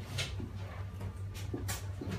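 Butcher's knife slicing and scraping through the sinew and membrane of a raw leg of lamb: a few short strokes, one near the start and two close together near the end, over a steady low hum.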